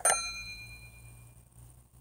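Sound effect of a mouse click followed by a notification-bell ding that rings out and fades over about a second and a half.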